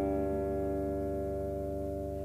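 The band's final chord held and slowly fading as the song ends.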